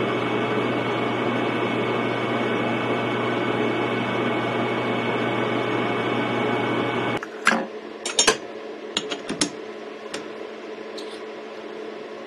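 Metal lathe running steadily while a center drill is fed into the end of a quarter-inch drill rod. The machine stops abruptly about seven seconds in, followed by a few light clicks and knocks.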